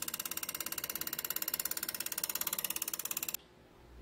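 Carbide-insert turning tool taking an interrupted cut on a spinning oak bowl on a lathe. It chatters in a fast, even rhythm of about a dozen hits a second as the tool strikes a puffed-up blob of Alumilite resin on the bowl's edge once each turn. It cuts off suddenly near the end.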